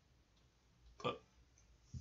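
Quiet room tone, broken about a second in by one short spoken word, "but".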